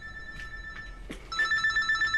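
Mobile phone ringing with an electronic ringtone: two rings, the second louder and rapidly trilling.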